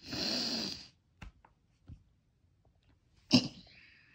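A person's mock snore: one breathy snore lasting just under a second, followed by a few faint clicks and a sudden sharp burst of breath near the end.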